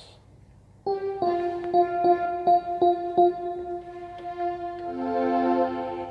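Yamaha arranger keyboard played with both hands on a strings voice. About a second in, a melody of short repeated notes starts over a held chord, and a new, lower chord comes in near the end.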